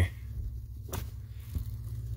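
Needle-nose pliers at a blade fuse in a car's plastic fuse box, giving a light click about a second in and a fainter one after it, over a steady low hum.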